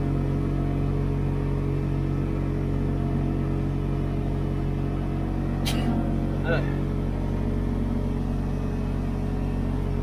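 Side-by-side UTV engine and drivetrain running steadily at cruising speed on pavement, a steady drone of several low tones heard from inside the cab. A sharp click comes a little past the middle, followed by a short rising chirp.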